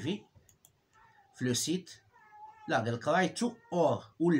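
A man's voice speaking in short phrases after a second's pause. A faint, high, wavering call sounds in a gap about two seconds in.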